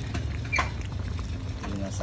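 A pan of goat caldereta simmering over a steady low hum, with faint small pops. There is a short crackle about half a second in.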